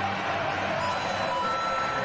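Ballpark crowd noise, a steady cheer from the stands after a home-team home run, with a few faint held tones over it in the second half.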